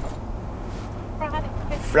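Steady low drone of a Ram pickup's 5.7 Hemi engine and tyre noise, heard inside the cab while cruising.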